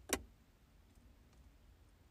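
A single sharp click of a car's overhead interior dome-light switch being pressed, switching the light off.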